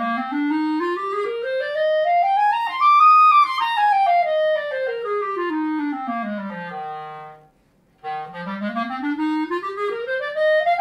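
Backun Protégé grenadilla-wood B-flat clarinet playing a fast scale from its lowest note up about three octaves and back down. After a short breath about seven and a half seconds in, it starts up again from the bottom.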